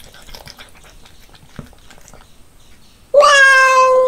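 A domestic cat gives one loud, steady meow just under a second long, about three seconds in. Before it come faint clicking chewing sounds as the cat eats small whole raw fish.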